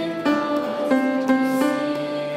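Small choir singing a worship song with instrumental accompaniment, the melody moving in held notes that change pitch about every third of a second.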